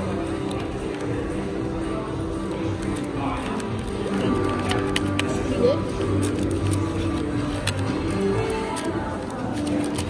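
Background music playing in a restaurant over the murmur of diners' voices, with a few faint clicks.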